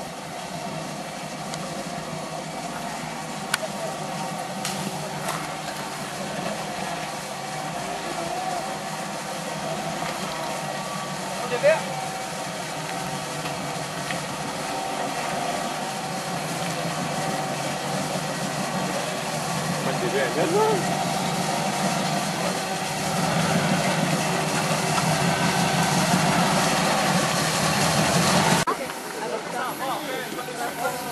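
V8 engine of a Jeep CJ5 running steadily at low crawling speed over rocks, growing louder in the last few seconds before the sound drops away suddenly near the end. A single sharp knock about twelve seconds in.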